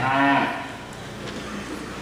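A Simmental heifer moos once; the call peaks in the first half second and fades out.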